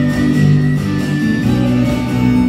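Live acoustic band playing an instrumental passage: a strummed acoustic guitar with a harmonica holding long notes over it, and no singing. The chord changes about one and a half seconds in.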